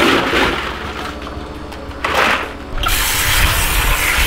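Ice cubes clattering as they are scooped out of an ice machine's bin, in two bursts about two seconds apart. Near the end a steady rushing noise takes over.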